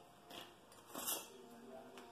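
Two brief handling noises as small parts and their clear plastic packaging are handled on a table: a faint rustle, then a louder, sharper rustle-click about a second in.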